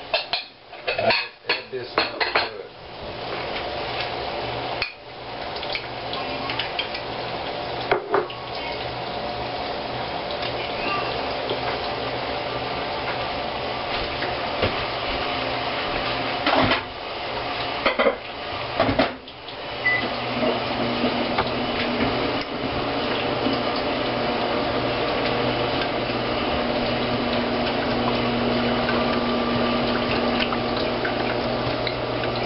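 Wire whisk clinking and scraping against a glass bowl while stirring a milky custard mixture, with clusters of sharper clinks and knocks of kitchenware near the start and again about two-thirds of the way through.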